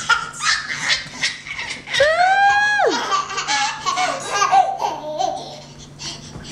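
A toddler laughing and squealing with delight, with one long high squeal about two seconds in that rises, holds and then drops away, followed by choppier giggles.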